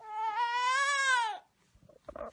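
A toddler's long wordless cry of about a second and a half, its pitch rising slightly and then dropping away as it ends.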